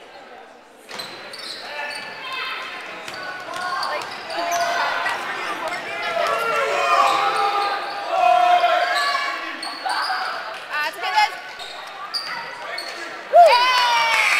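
Basketball game in a gym: spectators shouting and cheering, getting louder about a second in, with a basketball bouncing on the hardwood court.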